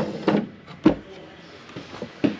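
A wooden pull-down spice rack pushed shut with a single sharp click about a second in.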